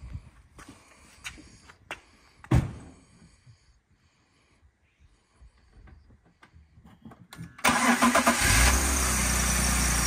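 2004 BMW 330Ci E46's 3.0-litre M54 inline-six cold-starting. After a few faint knocks, about three-quarters of the way in the engine cranks and catches suddenly, then settles into a steady idle.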